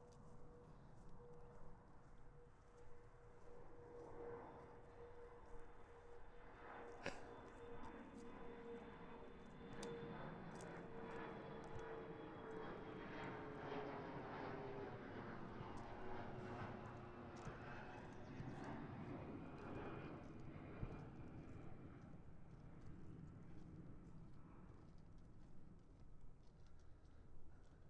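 An airplane passing over, its engine drone falling slowly in pitch as it goes by and fading out near the end. Footsteps through brush and gravel click faintly along with it.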